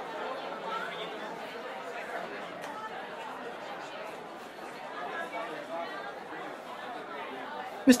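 Crowd chatter: many voices talking at once in a steady murmur, with no single voice standing out.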